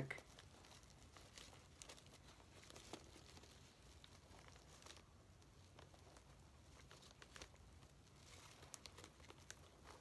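Near silence with faint, scattered crinkles and rustles of paper and plastic packaging being handled as fingers work at a trim tied around a bundle of paper.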